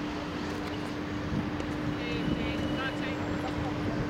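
Outdoor tennis court ambience between points: a steady low hum over a rumbling background, with faint distant voices around the middle.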